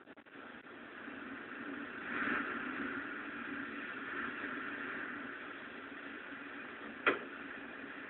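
Faint steady background noise with no speech, swelling slightly about two seconds in, and a single sharp click about seven seconds in.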